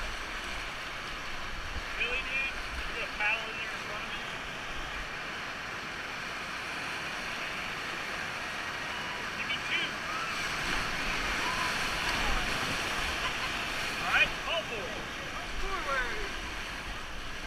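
Whitewater rapids rushing around a paddle raft, a steady noise of churning river water that swells a little past the middle. Brief calls from the rafters cut through it several times.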